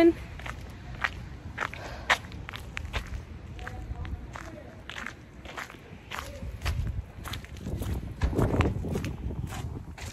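Footsteps of a person walking in slippers on snowy ground, about two steps a second, with a louder low rumble around eight and a half seconds in.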